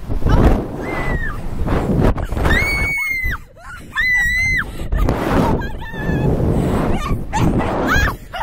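Two young women shrieking and laughing, with long high-pitched screams about two and a half and four seconds in, over wind buffeting the microphone.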